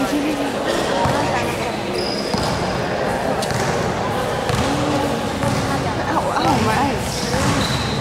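A basketball bouncing on a hard court during a game, with players' and onlookers' voices calling out over it in a large hall.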